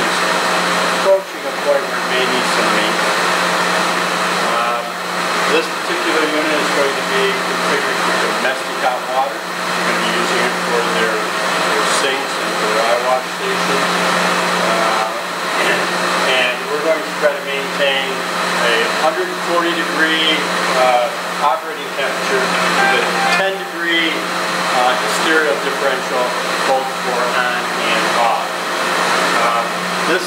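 Steady fan-like rushing with a constant low hum from running boiler-room equipment, with a man's voice talking over it.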